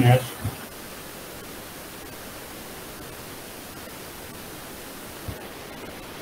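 A steady hiss of microphone and line noise from a voice-call lecture recording, following a last spoken word at the start, with one faint brief low sound about five seconds in.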